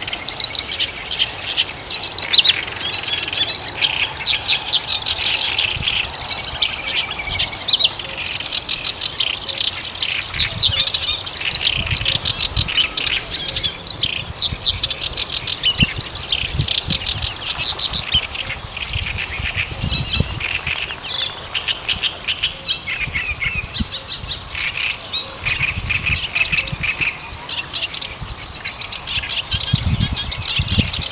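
Reed warbler (kerak basi) singing a long, continuous song of fast, repeated chattering notes, with a faint steady high hiss behind it.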